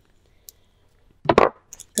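A short knock of handling about a second and a quarter in, as a nail art brush is picked up off the table, followed by a couple of light ticks.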